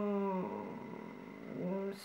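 A woman's drawn-out hesitation hum, a steady low 'mmm' held for about half a second. A short pause follows, then her voice starts again near the end.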